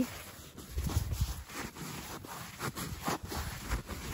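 Boots crunching and sinking into deep snow in a run of irregular, heavy steps, with low thuds among them about a second in.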